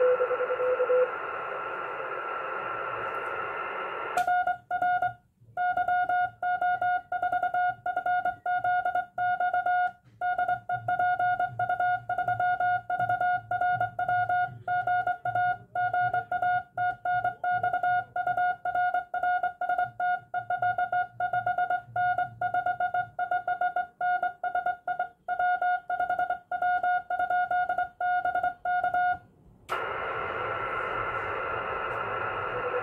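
Morse code (CW) keyed by hand on a Morse key, heard as the transceiver's sidetone: a buzzy beep of steady pitch switched on and off in dots and dashes for about 25 seconds, starting with a click about four seconds in. Before that comes receiver hiss, with the other station's fainter, lower-pitched CW in the first second.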